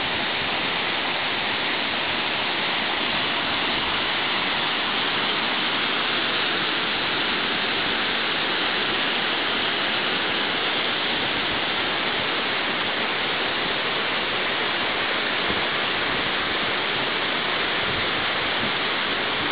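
Waterfall: water pouring steadily down a rock slide into a plunge pool, an even rush that holds level throughout.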